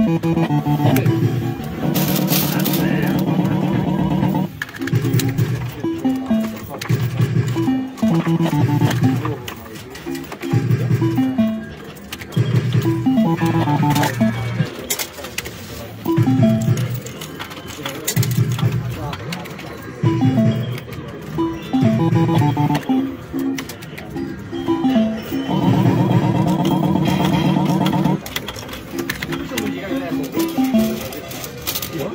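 Retro fruit machine playing its electronic tunes: short stepping melodies of beeping notes that repeat every couple of seconds, with a longer block of held notes about two seconds in and again near the end.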